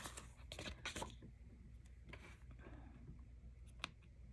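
Faint paper rustling and crackling as a sticker sheet is handled and a planner sticker is peeled off, with one sharp click near the end as the sticker is pressed onto the planner page.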